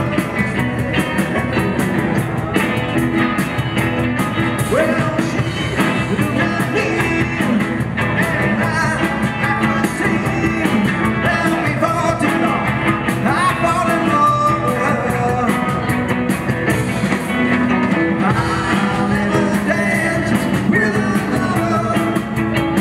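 Live rock band playing with electric guitars and drums, amplified through PA speakers.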